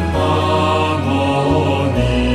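Chanted mantra singing over music, the voices and backing holding long steady notes.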